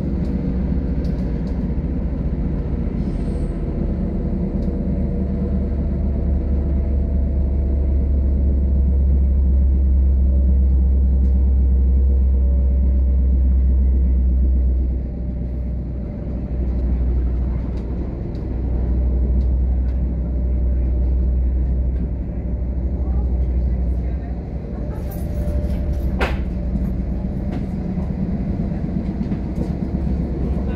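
Passenger train heard from inside the carriage, running along the track with a steady low rumble. The rumble is heaviest through the first half, then dips and swells, with a few sharp clicks late on.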